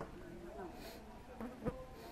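A flying insect buzzing close by, its pitch wavering up and down, with a sharp click near the end.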